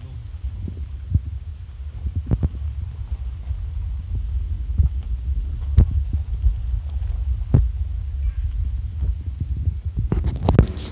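Low, steady rumble inside a car's cabin as it drives slowly over a rough gravel road, with a few sharp knocks as the car jolts over bumps, the loudest about six seconds in.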